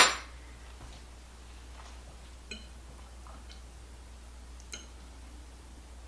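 One sharp clink of a metal serving utensil against dishware right at the start, then quiet room tone with a low hum and two faint clinks of the utensil on a plate, about two and a half and nearly five seconds in.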